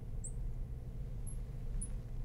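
Felt-tip marker squeaking on a glass lightboard as letters are written: three short, high squeaks over a low, steady room hum.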